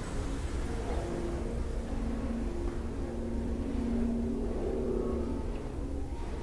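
A distant engine humming over a steady low rumble, swelling towards the middle and fading again, like a vehicle passing.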